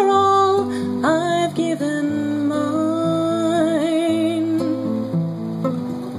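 An acoustic guitar is strummed while a man sings long, wavering held notes over it. The chords change every second or so.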